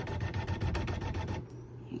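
Brother Essence embroidery machine's embroidery unit driving the hoop to a new position: a rapid, even run of small motor steps, about sixteen a second, stopping about a second and a half in.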